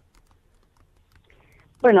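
A short, near-silent pause broken by a few faint clicks, then a woman's voice starts speaking near the end.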